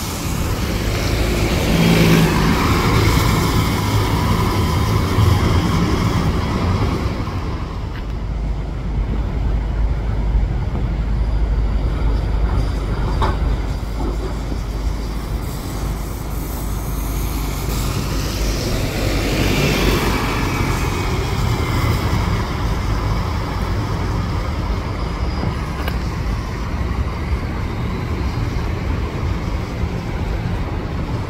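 City transit buses driving past one after another, engine and tyre noise over a steady low rumble. The noise swells as one bus passes a couple of seconds in and as another passes around twenty seconds in.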